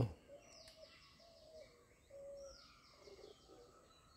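Faint bird calls in the woods: a few short, low, steady notes and two high falling whistles.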